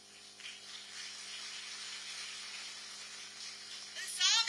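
Audience applauding, a steady wash of clapping that swells about half a second in.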